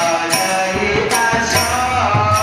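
A man's voice singing a devotional bhajan, amplified through a microphone, over sharp, ringing metal percussion strikes that keep a steady beat.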